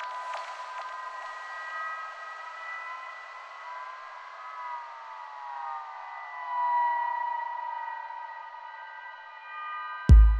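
Electronic track intro: sustained, siren-like synthesizer tones layered together. Several of them slide slowly down in pitch, with no bass or drums underneath.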